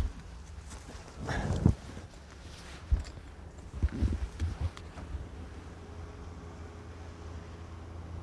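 Footsteps through long grass and nettles, with rustling and a few irregular knocks.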